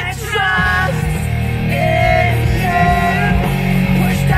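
A rock song with a sung vocal line of held notes over a steady bass, with a man and a woman singing along.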